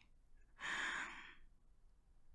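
A woman's single soft sigh, one breathy exhale starting about half a second in and lasting well under a second.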